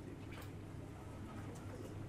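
Low, steady hum of lecture-room tone, with a faint click about half a second in.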